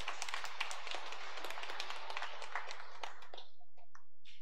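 Congregation applauding, a dense patter of many hands that dies away about three and a half seconds in.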